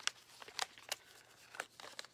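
About five light clicks and knocks with faint rustling, the loudest right at the start: small objects being handled and shifted aside.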